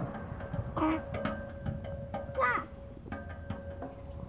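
A small child's short high squeals, twice, each sliding down in pitch, with light clicks and knocks from a playground swing's chains and hangers over a faint steady tone.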